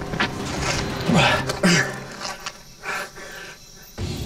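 A man grunting with effort as he climbs a tree trunk: two short grunts falling in pitch a little after a second in, then quieter heavy breathing.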